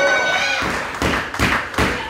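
A held shout, then a quick run of sharp thumps on a pro wrestling ring's canvas about every half second.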